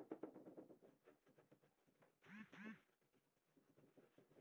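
Faint animal calls: a quick rattling run of calls at the start, then two short pitched calls that rise and fall, a little after halfway.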